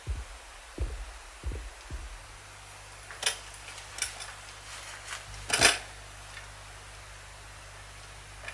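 Quiet lead-in before the song starts: a few soft low thumps, then a steady low hum with a few sharp clicks.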